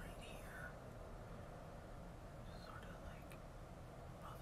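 Quiet room with a steady low hum and a few faint snatches of whispering.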